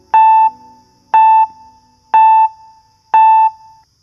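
Electronic countdown-timer beeps: four identical short high beeps, one a second, marking the time left to answer the quiz question.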